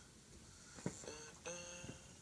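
Faint: a click, then two short held pitched notes with overtones, each starting abruptly, about one and one and a half seconds in.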